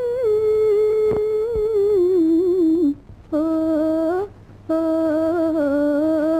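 A singer humming a wordless, ornamented melody in an old Tamil film love song, the line broken twice by short pauses for breath near the middle.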